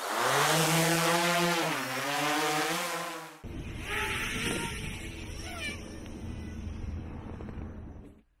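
A pitched logo sound effect with a dip in pitch midway, cut off sharply after about three and a half seconds. Then comes the quieter whine of the Eachine Tyro 119's brushless 2407 motors and six-inch props in flight, its pitch rising briefly a couple of times.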